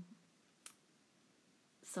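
Near-silent room tone broken by a single short click about two-thirds of a second in, then a woman's voice starting up near the end.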